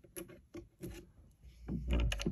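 Handling noise from a camera being adjusted on its overhead stand: a few soft taps and clicks, then a low rumble near the end as the camera is shifted.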